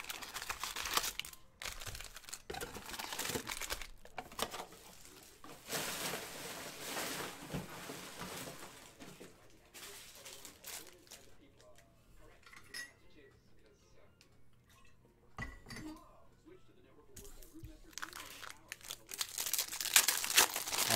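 Foil-wrapped trading card packs crinkling and rustling as they are lifted out of a cardboard box and stacked, with a few light knocks. The rustling dies down for several seconds in the middle, then picks up again near the end as a pack is handled.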